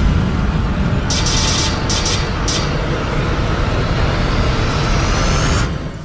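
Cinematic logo-sting sound design: a heavy low rumble, with a few airy whooshes between about one and two and a half seconds in and a slowly rising sweep, cutting off just before the end.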